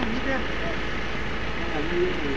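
Indistinct voices of several people talking over a steady low rumble of vehicle engine noise.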